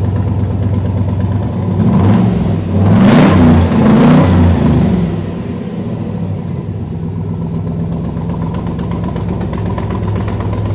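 LS3 V8 in a custom C2 Corvette Sting Ray running at idle, blipped three times in quick succession about two to five seconds in, each rev rising and falling, then settling back to a steady idle.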